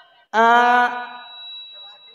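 A performer's voice over the stage microphone holding one long, flat, chant-like note for about half a second, then trailing off, with a thin steady high tone lingering after it.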